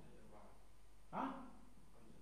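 A dog barking once, a short sharp bark about a second in.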